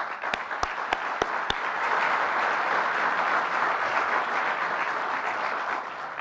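Audience applauding, a steady patter of many hands clapping that eases slightly near the end. A few sharp, evenly spaced clicks stand out in the first second and a half.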